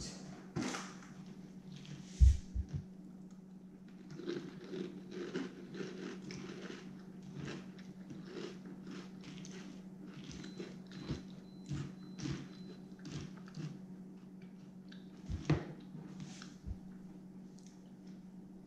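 Someone chewing a mouthful of crunchy Eggo waffle cereal in milk: a long run of small crisp crunches. A loud thump comes about two seconds in, and a sharper knock comes near the end.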